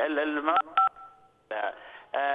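A single telephone keypad (DTMF) tone, a short two-note beep about a second in that fades out over half a second, heard over a phone line between stretches of a man's speech.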